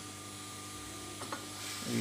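Hot air rework station blowing a steady hiss of hot air onto a circuit board, heating the solder of a charging jack to desolder it, with a faint steady whine under the hiss.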